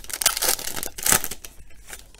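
Foil wrapper of a 2019 Donruss Optic football card pack being torn open and crinkled by hand. It crackles in two bursts, near the start and about a second in, and dies down after a second and a half.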